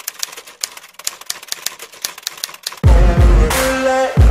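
Typewriter key-strike sound effect: a quick, irregular run of clacks as letters are typed out. Near the end, loud music with a heavy bass beat cuts in.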